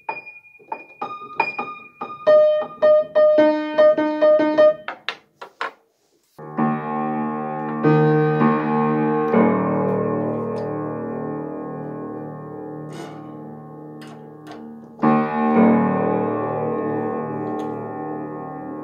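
Upright piano being tuned: the same notes and octaves are struck again and again in quick succession as a string is brought into tune. After a brief silence, full piano chords ring out and slowly fade, and a new chord is struck near the end.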